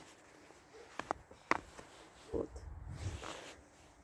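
Quiet handling noise from a hand-held phone being carried outdoors: a few light clicks about a second in, then a low rumble for about a second, with a short spoken word partway through.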